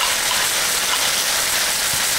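Turkey, carrot and onion sizzling in hot oil in an electric wok as jerk sauce is poured in: a steady hiss.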